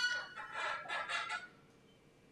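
Faint laughter from the audience, a short run of ha-ha bursts that fades out about a second and a half in.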